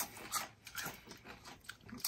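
Ruffles Double Crunch thick-ridged potato chips being chewed: faint, irregular crunches and crackles.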